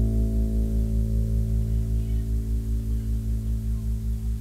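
Closing low chord on an acoustic-electric bass guitar ringing out and fading, the upper tones dying away first, with a steady pulsing wobble in the low end about six times a second.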